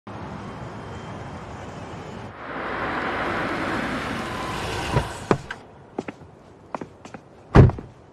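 A steady wash of city traffic, then a black Mercedes-Benz G-Class SUV rolling up on wet pavement with a hiss of tyres. Two door thunks come about five seconds in. Hard-soled footsteps follow, and a heavy thud near the end is the loudest sound.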